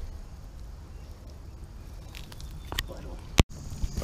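Outdoor rumble of wind on the microphone over a tidal mudflat, with a few faint crackles and squelches of wet mud, then a single sharp click and a brief moment of silence about three and a half seconds in.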